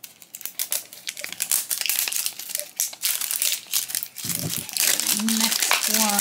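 The foil wrapper of a Funko Marvel Battleworld Battle Ball is crinkled and peeled off by hand, making a dense, continuous run of crackles.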